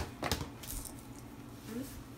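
Kitchenware clinking: a couple of sharp metallic clinks about a third of a second in, like a utensil knocking against a pot or dish, then a low background.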